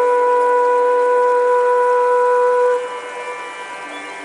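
Background music: a flute holds one long steady note, which falls away near the end.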